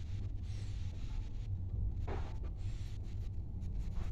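Lift car travelling downward: a steady low rumble from the moving car, with a few brief rushes of noise over it, the clearest about two seconds in.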